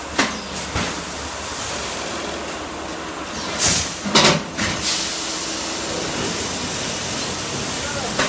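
Steady hissing noise of packaging machinery running in a workshop. A few short sharp bursts come just after the start, and a cluster of louder bursts comes about halfway through.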